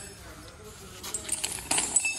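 Metallic clinking from the chain on a walking elephant's leg: a run of quick jingling clinks in the second half, with a light ringing after them.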